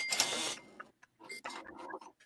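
Breathy laughter from a man: a burst near the start, then quieter short bursts in the second half.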